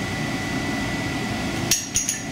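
A steady low rumble with a faint, steady high whine, then two sharp clicks with a bright metallic ring near the end.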